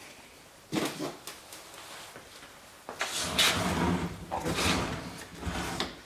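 Handling noises: a single knock about a second in, then scraping and rustling from about three seconds in as a car headlight assembly is turned around on a wooden workbench by gloved hands.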